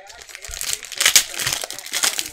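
Foil wrapper of a Panini Prizm basketball card pack crinkling and tearing as it is pulled open by hand, with sharp crackles about a second in and again near the end.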